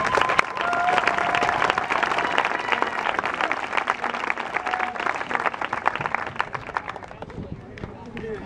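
Small crowd applauding, many hands clapping fast, thinning and dying away near the end.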